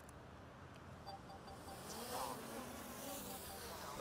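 Small quadcopter drone spinning up and lifting off, its propellers making a thin, insect-like buzzing whine that grows louder about a second and a half in as it rises.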